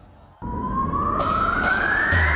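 A rising electronic sweep, siren-like, cuts in suddenly about half a second in and climbs steadily in pitch, with a hiss joining after about a second: a build-up riser played through the PA leading straight into a heavy electronic dance track.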